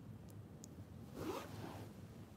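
Faint handling noise on a phone: a brief rubbing swish a little over a second in, over a quiet room.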